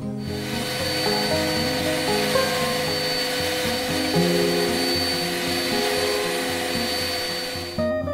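Steady workshop machine noise with a high whine: a CNC router spindle milling a pocket into a wooden block, with a shop vacuum hose sucking up the chips. It cuts off suddenly just before the end, over background music.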